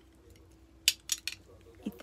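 A set of measuring spoons clinking together as they are handled, three or four sharp clinks in quick succession about a second in.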